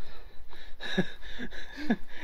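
A man's short wordless cries and laughing noises: a few quick yelps that slide down and then up in pitch.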